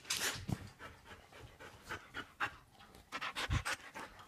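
A husky panting close to the microphone in quick short breaths, louder in the last second.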